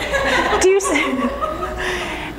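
Speech mixed with chuckling laughter.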